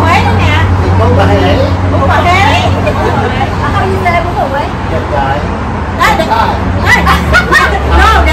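Several people talking over one another in a group conversation. Under the voices runs a steady low rumble of road traffic.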